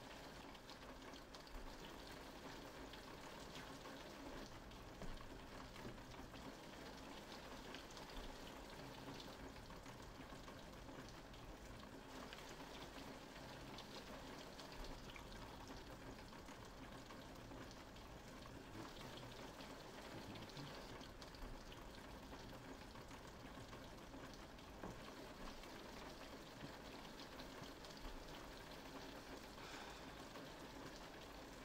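Faint, steady rain with scattered small ticks of drops.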